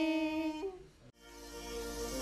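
A woman's voice holding the last long note of a Thai folk song; it breaks off about half a second in and trails away. After a short lull, instrumental music fades in.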